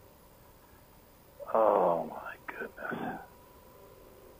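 A man's voice: a short utterance with no clear words, starting about a second and a half in, loudest at first and trailing off in two weaker parts, over faint steady background hiss.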